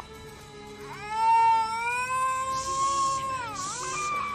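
A dingo howling: one long howl that starts about a second in, rises slightly and holds, then dips in pitch near the end.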